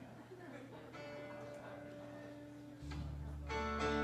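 A live rock band starting a song. A guitar chord rings out about a second in, a low bass note joins near three seconds, and a fuller, louder strummed chord comes in near the end.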